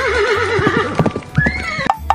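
A horse neighing: a long, quavering whinny, with hoofbeats through the middle and a short higher call near the end.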